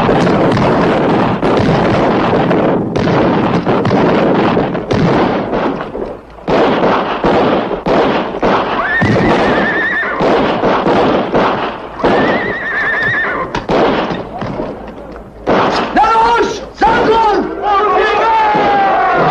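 Battle-scene soundtrack: a dense din of gunfire, with a horse whinnying about nine seconds in and again about twelve seconds in. Men shout near the end.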